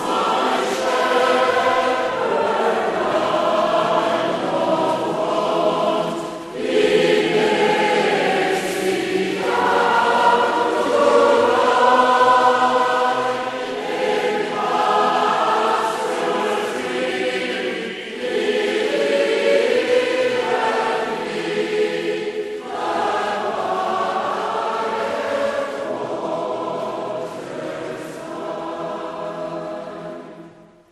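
A choir singing a slow hymn in long, sustained phrases with short breaks between them, fading out at the end.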